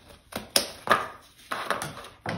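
Scissors cutting through a paper plate: several sharp snips, a few in the first second and a quick cluster about a second and a half in.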